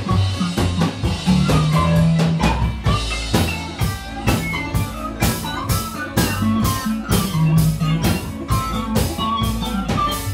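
Live rockabilly band playing an instrumental passage: electric guitar over walking upright-bass notes and a drum kit keeping a steady beat.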